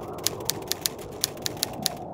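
Typewriter keys striking in a rapid, uneven run of sharp clicks, over a steady low rushing noise.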